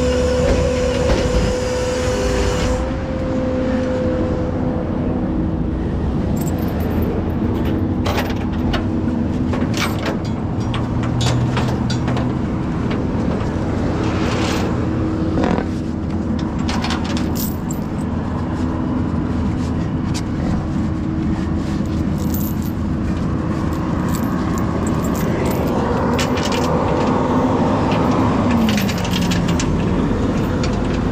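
A steady engine hum and road-traffic rumble, with scattered metal clicks and clinks from strap and hook hardware being handled. Near the end an engine note drops in pitch.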